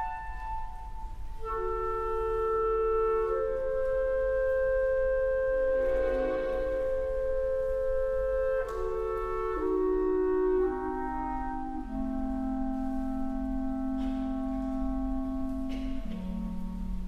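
Orchestral woodwind section, clarinets prominent, playing slow, sustained held chords that shift every few seconds, with a lower held note coming in near the end.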